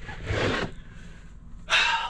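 Rustling of clothing and movement close to the microphone as a person shifts in a seat: a short rustle near the start and a louder one near the end.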